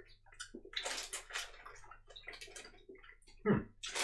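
A plastic snack bag rustling and crinkling in irregular bursts as gummy pieces are taken out of it.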